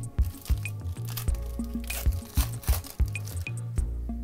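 Foil wrapper of a trading-card pack being torn open and crinkled, a crackling rustle that peaks about two to three seconds in, over background electronic music with a steady beat.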